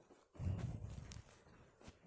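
A dog nuzzling right up against the phone, making rubbing and snuffling noises on the microphone. The noise is loudest for about a second, starting about half a second in, with a few small clicks.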